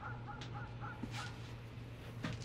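A bird calling in a quick run of about six short repeated notes that stop after a second or so, over a low steady hum.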